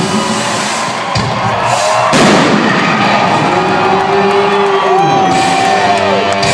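Live electric guitar solo heard over a concert PA: long sustained notes that bend and slide in pitch, over crowd noise. A single loud crash or bang comes about two seconds in.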